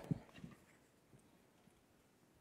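Near silence: quiet room tone, with the last faint low sounds of a woman's voice dying away in the first half second.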